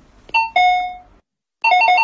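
Two-note electronic door chime as a shop door opens: a short high note then a longer lower one. After a brief silence, a rapid electronic ring starts, warbling quickly between two pitches, about eight notes a second, like a telephone ringing.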